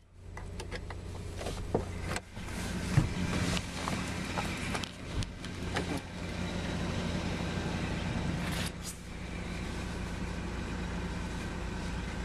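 Steady low hum inside a car cabin, overlaid by scattered clicks, knocks and rustles from a handheld camera moving over the seats.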